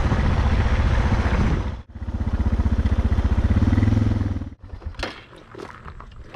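Suzuki dirt bike's single-cylinder engine running while riding, with a steady rush of noise over it. The sound breaks off abruptly just before two seconds in and picks up again, the engine rising a little in pitch. It cuts off sharply about four and a half seconds in, leaving only faint clicks.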